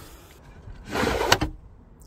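Wooden lid of a box being lifted open: a short scraping sound just under a second in, with a sharp knock about a second and a third in.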